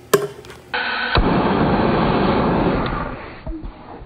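A loud rushing burst of flame from a MAPP gas torch, with a sharp knock about a second in. It holds steady for about two seconds and then dies away.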